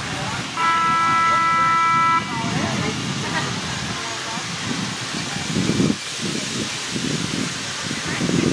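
A horn sounds once, just after the start: one steady note lasting about a second and a half. It is followed by outdoor background with faint voices.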